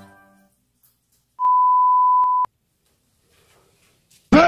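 Background music fading out, then a single steady electronic beep lasting about a second, starting about a second and a half in.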